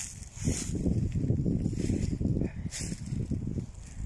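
Footsteps crunching and rustling through a thick layer of dry fallen leaves.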